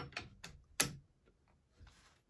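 Hollow steel bayonet being slid over the muzzle and cleaning rod of a Swedish M/96 Mauser rifle: a few sharp metal clicks, the loudest a little under a second in.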